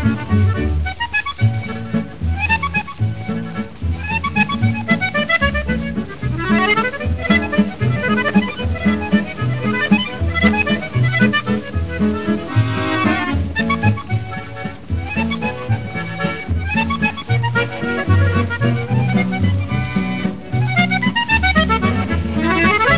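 Accordion playing quick running melody lines over a plucked bass line and guitar accompaniment. It is an old 1939 78 rpm recording with no high treble.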